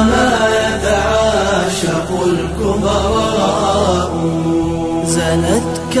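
Arabic nasheed: layered voices chanting long, ornamented held notes with no clear words, over a steady low drone.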